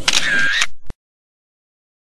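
Camera shutter sound effect: a short whir ending in a single click, then the sound track cuts to complete silence.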